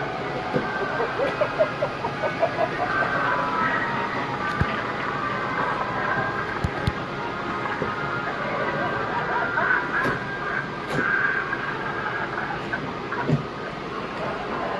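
Recorded soundtrack of Halloween animatronic figures: music and voice-like effects. A quick run of short pitched notes plays about a second in, with a few sharp clicks later.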